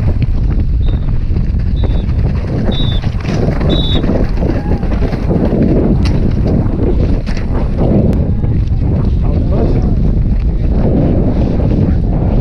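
Wind buffeting the helmet camera's microphone as a downhill mountain bike descends fast over a rough dirt trail, with a steady low rumble from the tyres and scattered clicks and rattles from the bike.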